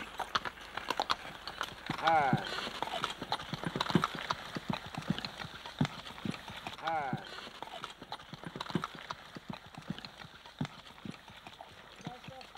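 Horses' hooves clip-clopping at a walk on a rough dirt road, as a two-horse team draws a loaded hay cart past. There are two short, pitched squeals, about two and about seven seconds in.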